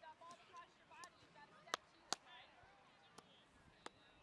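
Faint, distant voices of players and spectators across an open field, with four sharp knocks scattered through the second half.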